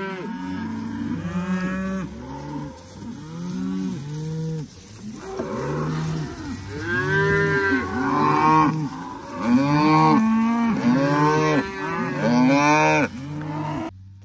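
A herd of beef cattle mooing, many calls overlapping one another, growing denser and louder in the second half.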